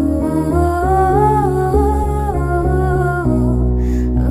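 A woman humming a slow wordless melody over an instrumental backing track of sustained chords.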